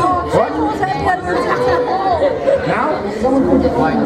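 Several people talking over one another in a large room: overlapping, indistinct chatter.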